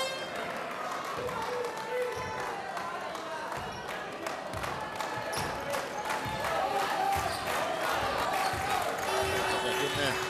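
A basketball dribbled on a hardwood court, bouncing steadily with under a second between bounces, in an arena hall full of crowd voices and music.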